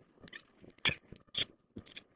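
Sections of a telescopic Tenkara rod being handled, giving a few light clicks and ticks, the two clearest about a second apart near the middle.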